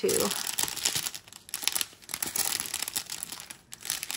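Strip of small clear plastic bags of diamond-painting drills crinkling as it is handled, in a run of irregular crackles.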